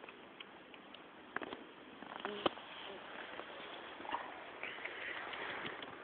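Faint, scattered taps and soft crunches in snow over a steady hiss, with the sharpest click about two and a half seconds in.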